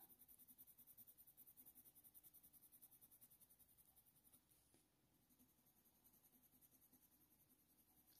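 Near silence, with a coloured pencil faintly scratching on hot-press watercolour paper in small circular strokes for the first few seconds. The pencil is a black Faber-Castell Polychromos, pressed hard.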